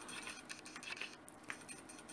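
Faint, light taps and handling sounds of an ink pad being dabbed onto a wood-mounted rubber stamp, inking it with gold ink.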